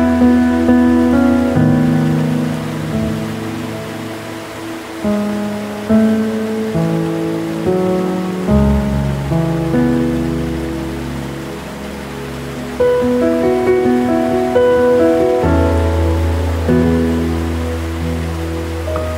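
Slow, gentle piano music, with single notes struck and left to fade and deep bass notes that change every few seconds, laid over a soft steady rush of falling water.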